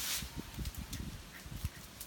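Water spraying from a garden hose hisses briefly and cuts off just after the start, followed by faint low knocks and rustling.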